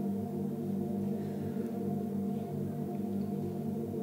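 Ambient worship music: a soft, sustained chord held steadily on a keyboard pad, with no singing and no strikes or strums.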